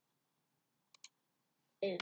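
Two quick computer mouse clicks about a second in, a fraction of a second apart, otherwise near silence.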